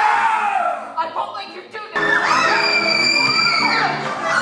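A stage chorus shouting and yelling together over pit orchestra music. About halfway through, the sound cuts to orchestral music with a long held high note.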